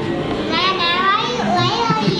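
A very high-pitched voice vocalising without words, wavering up and down from about half a second in, over faint background music.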